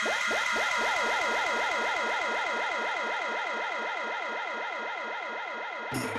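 Dramatic synthesized sound-effect sting: a sustained echoing chord with a fast repeating swooping warble, about four sweeps a second, slowly fading.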